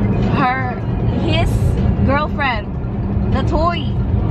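Steady low road and tyre rumble inside the cabin of a Porsche Taycan Cross Turismo, an electric car, at highway speed. A pitched voice glides up and down four times over it.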